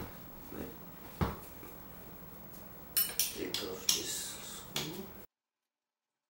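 Metal clinks and knocks from hand work on an electric scooter's rear wheel and axle: a couple of sharp clicks, then a cluster of clatter near the end. The sound cuts off suddenly shortly before the end.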